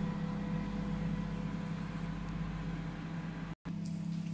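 Microwave oven running: a steady electrical hum with fan noise, broken by a brief dropout about three and a half seconds in.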